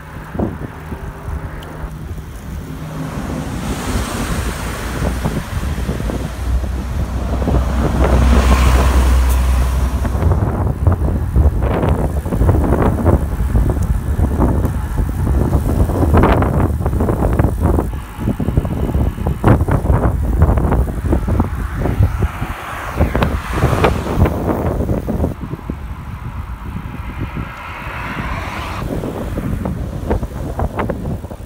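Wind buffeting the microphone of a camera carried on a moving road bicycle: a heavy, unsteady rumble with gusty crackle, loudest about a third of the way in.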